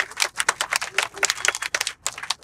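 A rapid, irregular run of sharp cracks and pops, many a second, in a pause between sentences of a speech at an open-air rally.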